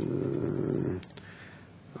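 A man's drawn-out, creaky hesitation sound, a low gravelly 'eh-h' lasting about a second, followed by a short click.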